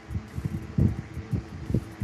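A few short, muffled low thumps picked up by a microphone, over a faint steady hum.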